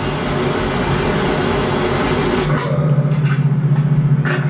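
An old pickup truck's engine running, played back from the music video; about two and a half seconds in a steady, pulsing low hum of the idling engine takes over.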